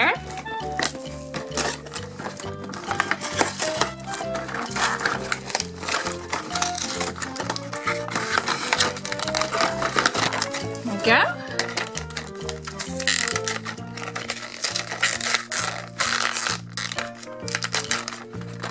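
Background music with steady bass notes under cardboard and plastic packaging crinkling and scraping as a toy figure is worked loose from a box insert.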